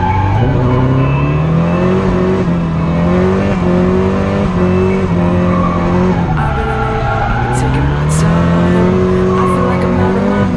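Nissan S-chassis drift car's engine revving hard, heard from inside the cabin: the revs climb over the first couple of seconds, hold high, drop about six seconds in and climb again. Tires squeal under the slide, and a few sharp clicks come late on.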